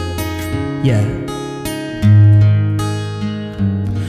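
Capoed acoustic guitar strummed in a slow ballad accompaniment, chords left to ring, with a new chord struck firmly about two seconds in, the loudest moment. A short sung "yeah" comes about a second in.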